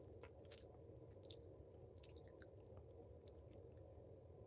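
Quiet ASMR mouth sounds: about six short lip and tongue clicks, scattered irregularly, the loudest about half a second in.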